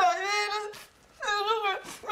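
A woman crying: two long, high, wavering wails, the second starting a little past halfway.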